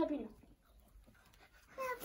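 A young child's voice: a short syllable at the start and a brief high call near the end, with near quiet between.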